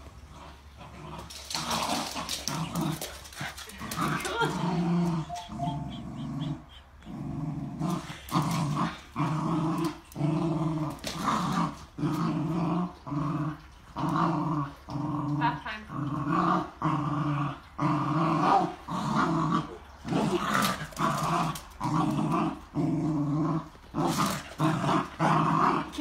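Small dog growling in a long run of short repeated growls, about one a second, starting a second or two in.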